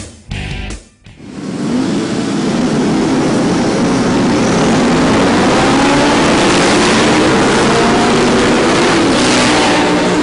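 A pack of racing motorcycles accelerating hard off the start grid. It starts about a second in, after a snatch of rock music, and quickly builds into a loud, dense roar of many engines revving and rising in pitch together, which holds to the end.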